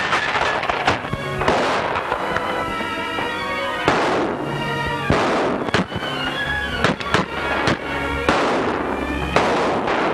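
A gunfight: about ten gunshots going off at irregular intervals, some with a long noisy tail, including rifle fire, over a dramatic film score.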